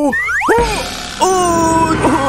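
Cartoon slip-and-fall sound effects: a quick rising boing-like glide, a low thud about half a second in, then a long, slightly wavering held tone from a little after a second in.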